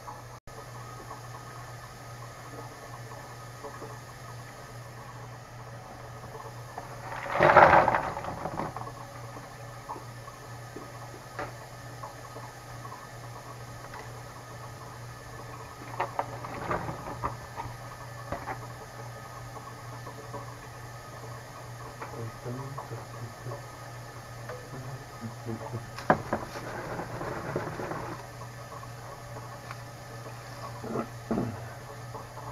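Cut vegetables tipped and scraped with a knife off plates into a frying pan of water: one loud rush of about a second, then later bouts of knife clicks and scraping on the plate, over a steady low hum.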